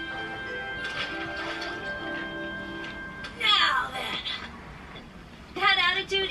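Soundtrack of an animated show: held music notes, then a quick falling sweep about three and a half seconds in, and a voice starting near the end.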